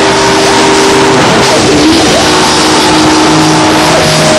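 Loud live hardcore rock band playing: distorted electric guitars over drums and cymbals, overloading the recording. Held guitar notes slide up in pitch a few times.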